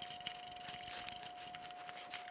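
Faint small clicks and rubbing of a knob-headed M10 screw being turned by hand to fasten a light's metal mounting bracket onto the top of a stand, under a faint steady high whine.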